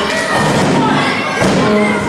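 Thuds on the canvas of a wrestling ring, with a crowd's shouting and chanting voices over them.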